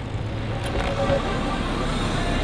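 City street traffic noise: a steady rumble and hiss of vehicles.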